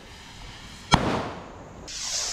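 Diwali firework rockets going off from a batch: one sharp bang about a second in that fades away, then the hiss of a rocket launching near the end.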